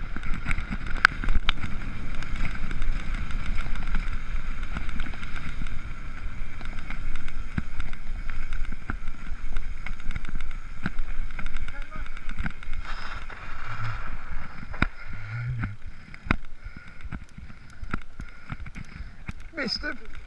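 Mountain bike ridden fast along a dirt woodland trail: the tyres rumble on the dirt, the bike rattles over bumps with many sharp knocks, and wind hits the microphone. It eases off over the last few seconds as the bike slows.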